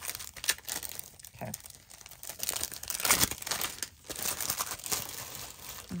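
Plastic packaging sleeves of clear stamp sets crinkling as they are handled, in irregular crackles, loudest about three seconds in.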